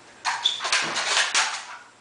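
Spring pogo stick bouncing on a hardwood floor: several quick bounces, each a short noisy clatter of the spring and rubber foot, with one brief high squeak about half a second in. The bouncing dies away near the end as the rider stops.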